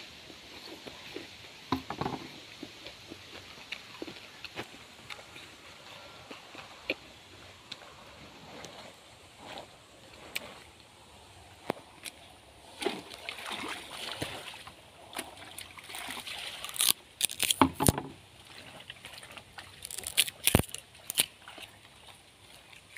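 Water sloshing and splashing in a plastic basin as clothes are washed by hand, in irregular bursts that come thicker in the second half, with a few sharp knocks.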